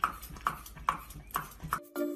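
A dog chewing a raw carrot with loud, evenly spaced crunches, about two a second. Near the end the crunching stops and chiming music starts.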